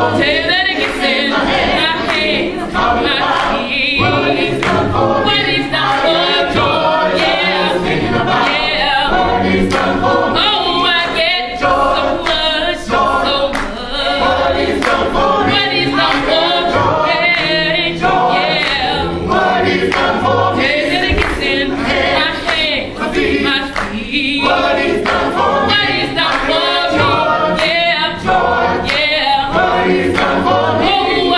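Gospel vocal group of mixed men's and women's voices singing together, with lead singers on handheld microphones.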